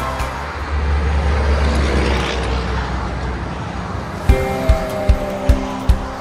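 Steady rush of highway traffic with a low rumble. Background music with a steady beat comes back in about four seconds in.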